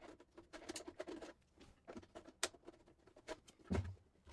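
Faint clicks and plastic rattles of a tool-less NAS drive tray being handled and worked in and out of its bay, with one sharper click about two and a half seconds in and a short low-pitched sound near the end.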